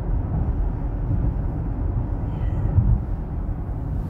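Steady low road rumble heard inside a moving car's cabin: tyres running on a snow-covered highway, with a short bump about three seconds in.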